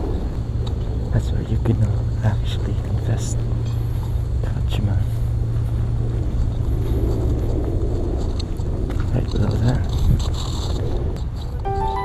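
Outdoor ambience recorded while walking: a steady low hum over an even background noise, with scattered faint clicks and faint wavering sounds in the middle range.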